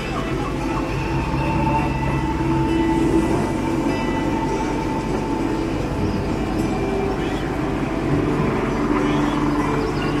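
Steady low rumble of indoor ambience with background music and indistinct voices.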